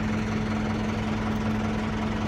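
Massey Ferguson 573 tractor's diesel engine idling steadily, heard from inside the cab.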